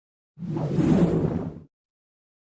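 A deep whoosh sound effect for an animated logo zooming in. It swells in quickly about a third of a second in, lasts just over a second and cuts off sharply.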